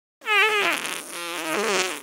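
One long, pitched fart sound lasting a little under two seconds: it starts loud with a falling pitch, dips quieter in the middle, then wavers back up before cutting off.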